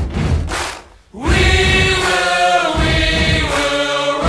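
Group of voices singing in chorus over music with a strong low bass: a short sung phrase, a brief break about a second in, then a longer held phrase.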